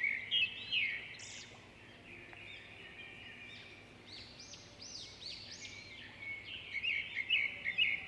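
Small birds chirping: many short, quick chirps, more of them near the start and again through the second half, over a faint steady hiss.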